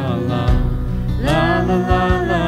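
Man and woman singing a slow country ballad as a duet into microphones over instrumental backing. One sung phrase tails off just after the start and the next begins past the middle.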